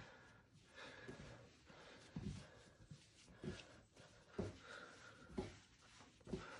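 Near silence with faint, soft thuds and pushes of bread dough being kneaded by hand on a floured worktop, roughly once a second.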